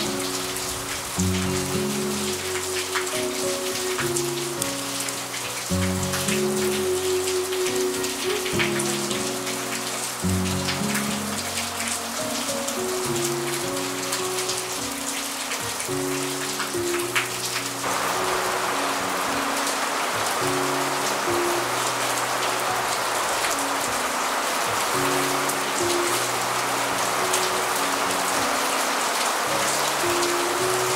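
Wood fire crackling and hissing under a grill, with a background music melody throughout. About two-thirds of the way in, a steadier hiss joins the crackle.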